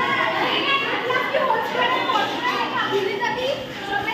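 Several voices talking and chattering at once, overlapping and unbroken.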